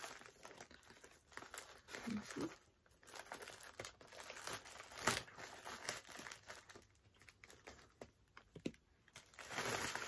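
A mailing bag being opened with scissors and its contents handled: quiet, irregular crinkling and rustling, with one sharper click about five seconds in.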